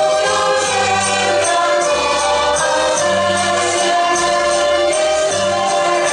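Group of women singing a folk song together over instrumental accompaniment with a moving bass line and a steady beat.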